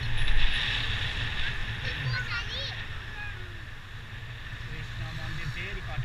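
Wind buffeting the microphone with road noise from a ride on a two-wheeler: a steady heavy rumble with a gust just after the start. A few brief high chirps come about two seconds in, and faint voices can be heard near the end.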